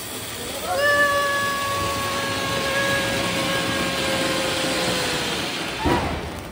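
Diwali ground fountain firework (anar) spraying sparks with a steady hiss. A whistle rises in about a second in, holds one steady pitch for about four seconds, then fades. A sharp crack comes near the end.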